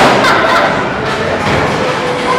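Bowling ball striking the pins: one sharp crash right at the start, then a fading clatter of pins.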